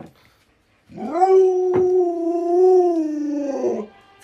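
Alaskan Malamute giving one long, drawn-out howling call of about three seconds, steady in pitch and dropping off at the end.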